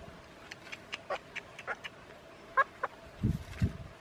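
Rooster being held in the hand, giving a run of short squawks and clucks. Two dull thumps follow near the end.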